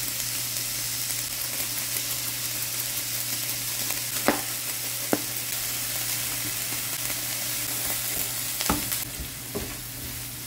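Ground beef and diced onion sizzling steadily in a frying pan, with a few sharp clicks and knocks as the mix is stirred.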